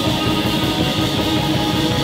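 A live noise pop band playing loudly: strummed electric guitar over a drum kit, in a dense, steady wall of sound.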